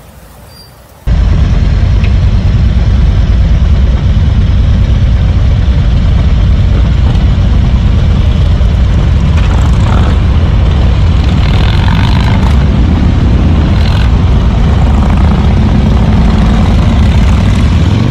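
Group of cruiser motorcycles riding along the road, heard from a bike-mounted camera: a loud, steady low rumble of engines and wind that starts suddenly about a second in.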